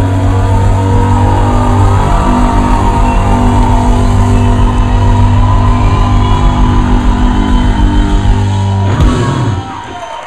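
Live rock band with electric guitars and bass holding a loud, sustained chord, which cuts off abruptly about nine seconds in.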